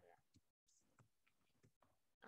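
Near silence: room tone with a few very faint clicks.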